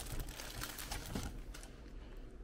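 Faint light clicks and rustling as a hand reaches onto a shelf and picks up a red kuri squash.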